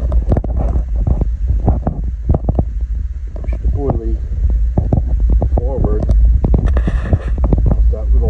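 Indistinct talking over a steady low wind rumble on the microphone, with short knocks and rustles of handling.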